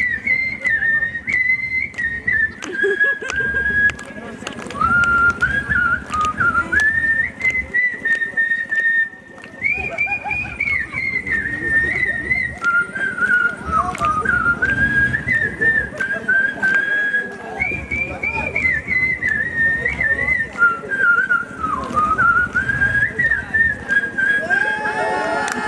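A man whistling a melody through pursed lips. The tune wavers between about 1 and 2.5 kHz with slides and quick trills, and there is a brief break about nine seconds in.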